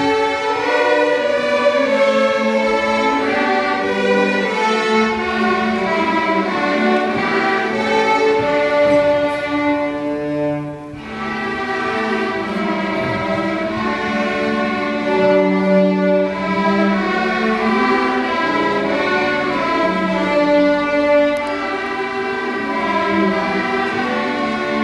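School string orchestra of violins, violas and cellos playing a slow piece in D major with long full-bow notes held for a ringing tone. Loudness dips briefly between phrases near the middle.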